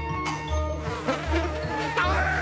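Cartoon sound effect of a swarm of bees buzzing, starting about a quarter second in, over background music.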